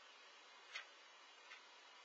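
Near silence with two faint, light clicks less than a second apart, from metal tweezers handling small fossil pieces.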